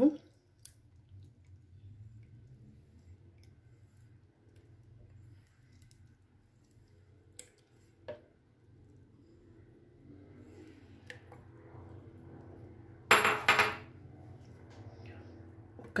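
Sweetened condensed milk being emptied from a metal can into a plastic blender jar of canned peaches: mostly quiet, with a few light taps of utensil on can. About 13 seconds in comes one short, loud clatter of kitchenware.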